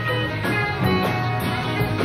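Live band playing with an electric guitar over bass, keyboards and drums, with a steady cymbal pulse. It is an audience tape made from a club balcony, so the sound is distant and roomy.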